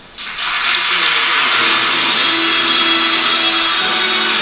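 Audience applause, starting suddenly right after an acceptance speech ends and then holding steady and loud.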